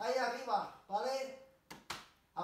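A voice talking, with words the recogniser did not catch. Near the end come two quick sharp clicks, less than a fifth of a second apart.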